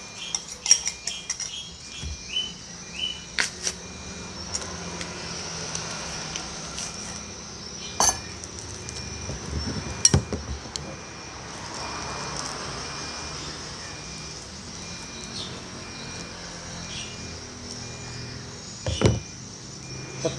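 A metal spoon tapping and scraping in a plastic bowl as flour is measured out, with small clinks clustered in the first few seconds. A few sharp knocks of utensils and bowls being handled come about eight and ten seconds in and near the end.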